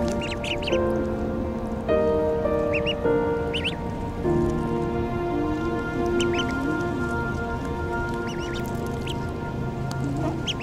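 Mallard ducklings giving short high peeps in small clusters over background music of sustained, slowly changing chords.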